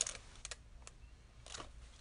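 Fingers tapping on a handheld smartphone: a few faint, separate clicks spread through the pause.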